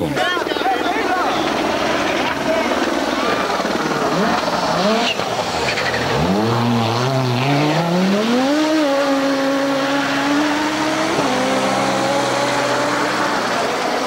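Audi Quattro S1 rally car's turbocharged five-cylinder engine revving hard, climbing steeply in pitch about six seconds in, then holding high revs with a small drop in pitch around eleven seconds.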